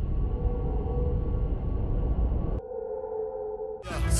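Intro sound effect for an animated logo: a deep rumbling drone with a held ringing tone. About two and a half seconds in it suddenly thins to a quieter hum of a few held tones.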